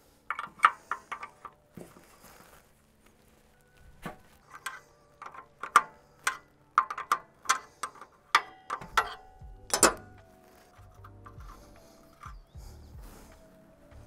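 Steel combination wrench clicking and clinking against steel hydraulic hose fittings while a threaded fitting on a tractor loader arm is loosened: a string of sharp, irregular metal clicks, some ringing briefly.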